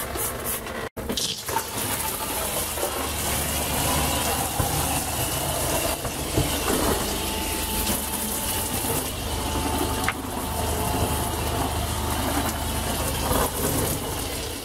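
Water running from a handheld shower head onto the plastic walls of an RV shower stall: a steady rush with a low hum under it.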